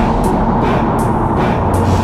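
Yamaha SuperJet stand-up jet ski running at speed on the water, engine and spray, with background music mixed over it and regular sharp hits about every three-quarters of a second.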